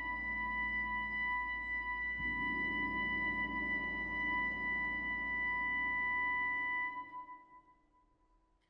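Contemporary chamber ensemble holding a quiet sustained sonority: a steady high note over a low soft rumble, with a soft low stroke about two seconds in. The sound dies away to silence about seven seconds in.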